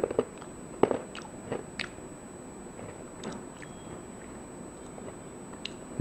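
A person chewing a Tums chewable antacid tablet, with irregular crunches: the loudest right at the start, several more in the first two seconds, then only a few scattered ones.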